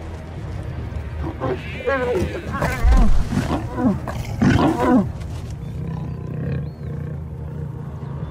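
Lions snarling and growling in a fight, a run of loud snarls from about one to five seconds in, over low background music.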